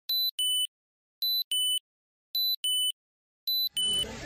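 Electronic countdown beeps of a film-leader countdown: four pairs about a second apart, each a short high beep followed by a slightly lower, longer beep, with silence between.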